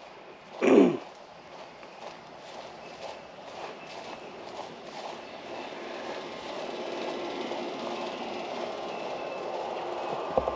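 A man clears his throat just under a second in. Then a vehicle's steady rumble slowly grows louder as it approaches.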